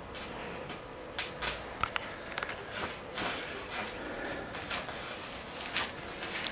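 A young brown bear moving about on a snow-dusted concrete floor: scattered light clicks and scrapes of its claws and paws, busiest between about one and three seconds in.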